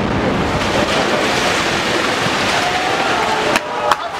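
Loud, even roar of noise following an explosion on a city street, as the blast's debris and dust come down, with two sharp cracks near the end.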